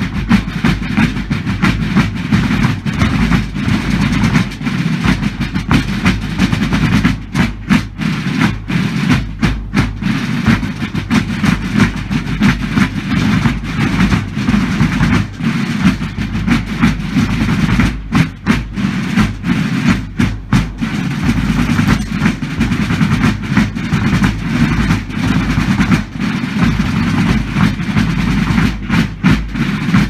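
Massed military snare drums and bass drums played together, a dense, continuous rattle of rolls and beats with no fife melody.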